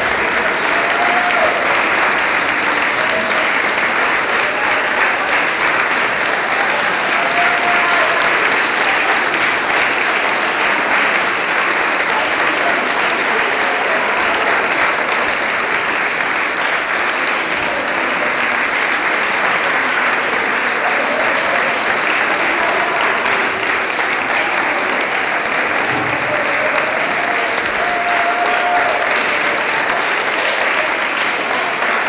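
Audience applauding steadily throughout: dense, continuous hand-clapping from a full hall, with a few brief voices heard through it.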